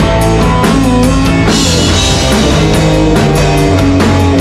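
Rock band playing live: electric guitar, bass guitar and drum kit, loud and steady, with regular drum and cymbal hits.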